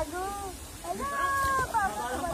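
High-pitched human voices calling out, with one drawn-out call held for under a second about a second in.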